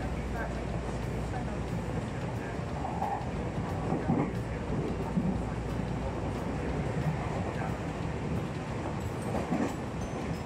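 Tobu Tojo Line electric commuter train running at about 80 km/h, heard from inside the carriage: a steady low rumble of wheels on rail.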